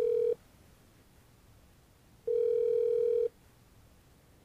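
Ringback tone from an OpenStage 40 desk phone's loudspeaker in hands-free mode, a sign that the dialled call is ringing at the far end. A steady mid-pitched tone cuts off just after the start and sounds again for about a second in the middle.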